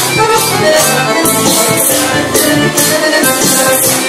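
Kyuchek (čoček) dance music: an accordion melody over a steady, shaker-like percussion beat.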